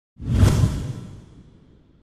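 Broadcast transition sound effect: a whoosh with a low rumbling boom, swelling quickly about a quarter of a second in and then fading away over about a second and a half.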